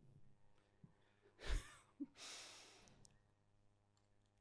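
A man breathing out into a handheld microphone: a short breath with a low pop about a second and a half in, then a longer, fading exhale.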